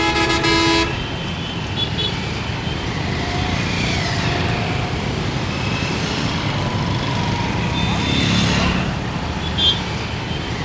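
Busy street traffic of motorbikes and cars running by, with vehicle horns honking: a long horn blast in the first second, then several short toots over the steady traffic noise.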